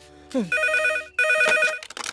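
Payphone ringing with an electronic trill: two short rings, each about half a second long. A brief falling sound comes just before the first ring.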